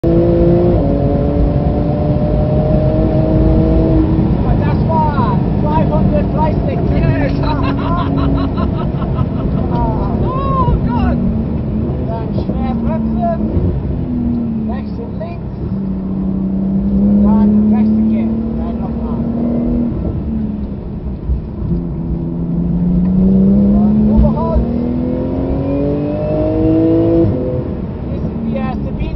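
Porsche 911 GT2 RS's 3.8-litre twin-turbo flat-six heard from inside the cabin, its engine note falling in stages as the car brakes hard from high speed, then holding steady for a few seconds. It then rises again under full acceleration over the last several seconds, over a constant road and tyre roar.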